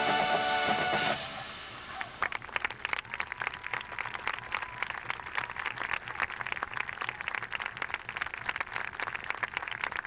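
Drum and bugle corps horn line holding the loud final brass chord of its show, which cuts off about a second in. Audience applause follows, a dense patter of clapping that continues to the end.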